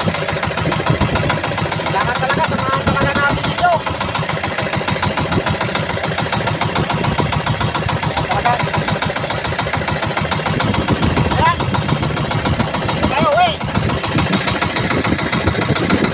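Small boat's engine running steadily at sea, a rapid, even low beat with no change in speed.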